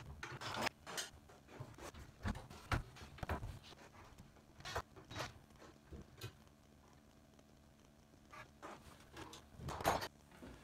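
Scattered knocks, clunks and rattles of a school bus emergency window being handled and worked out of its frame, with a quiet stretch about two-thirds of the way through and a cluster of louder knocks near the end.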